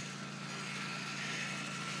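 Faint, steady outdoor background noise with a low hum under it, without any distinct event.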